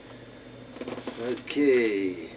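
Clicks and rattles of a guitar being picked up and handled, followed about one and a half seconds in by a short, louder wordless vocal sound sliding down in pitch.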